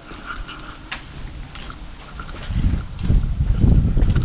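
Handling and wind noise on a hand-held camera's microphone as it is carried outdoors: a few faint ticks, then irregular low rumbling bumps that get louder about halfway through.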